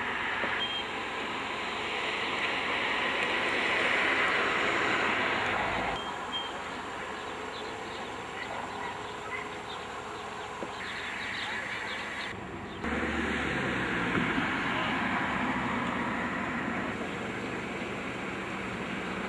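Roadside ambient noise with voices in the background. The noise changes abruptly twice, about six and about thirteen seconds in.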